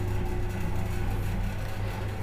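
A steady low hum under faint room noise, with no sudden sounds.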